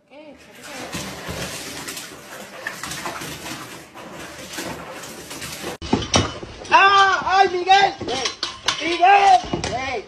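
Cat meowing loudly and repeatedly while being held under the tap in a kitchen sink for a bath, a string of short, rising-and-falling yowls in the second half. Before that, a steady hiss.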